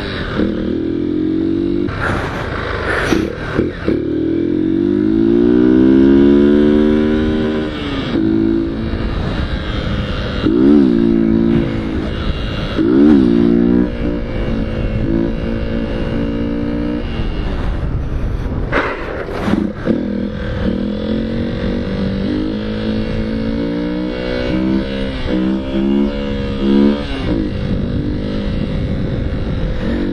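Motorcycle engine revving and easing with the throttle while the bike is ridden on its back wheel, its pitch climbing in a long sweep early on and dipping sharply a few times in the middle, with steady wind noise on the microphone.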